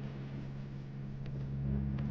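Light propeller plane's engine droning steadily in flight, with a deeper rumble growing a little louder near the end.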